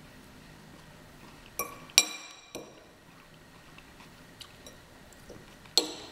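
Metal fork clinking on tableware as food is scooped: two ringing clinks close together about two seconds in, a quieter one just after, and another sharp clink near the end.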